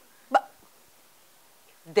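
A single brief, sharp vocal sound from a woman about a third of a second in, with quiet around it, then sung notes beginning right at the end.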